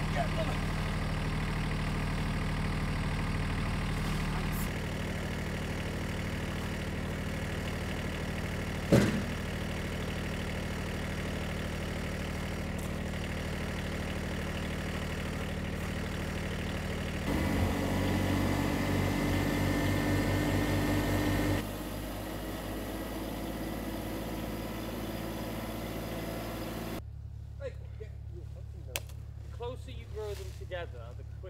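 Iseki compact tractor's diesel engine idling steadily, with one sharp knock about nine seconds in. Past the middle its note grows louder and busier for a few seconds, then near the end it drops away to a quieter background with a few faint clicks.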